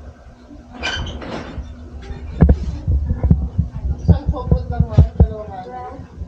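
Indistinct voices in a small, busy shop, with a run of irregular low thumps, about three a second, from about two seconds in until near the end.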